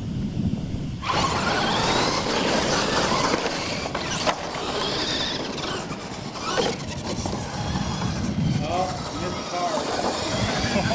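R/C monster trucks launch off the line about a second in and race across dirt. Their motors whine, sweeping up and down in pitch, over a steady rush of tyre and drivetrain noise.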